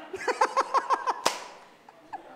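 A man laughing close to the microphone in a quick run of short 'ha' bursts, one sharp knock just after a second in, then dying away.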